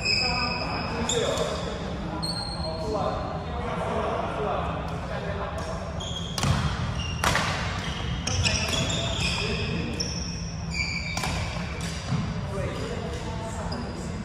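Badminton doubles rally in a large indoor hall: athletic shoes squeak often on the court floor, with several sharp racket hits on the shuttlecock, the strongest about six and a half and seven seconds in.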